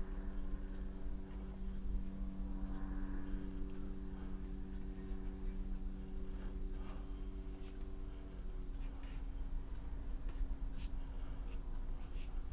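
Faint scratching of a fine watercolour brush on paper as small strokes are laid down, over a steady hum with a few pitched tones that shift in pitch about nine seconds in.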